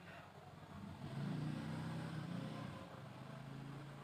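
Faint low hum of a motor vehicle's engine passing at a distance, swelling about a second in and fading out after about three seconds.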